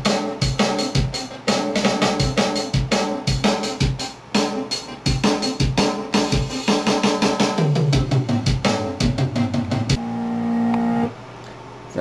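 Drum kit playing a fast rock pattern of kick, snare and cymbal hits over pitched notes. The drumming stops about ten seconds in, leaving a held note for about a second.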